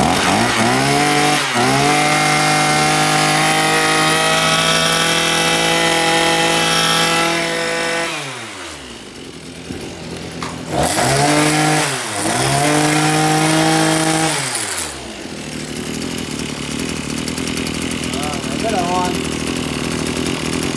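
Maruyama 26cc two-stroke brush cutter engine (34 mm bore) on a test run: it is blipped up twice and held at high revs, drops back to idle about eight seconds in, is revved up twice again and held, then settles back to idle for the last few seconds.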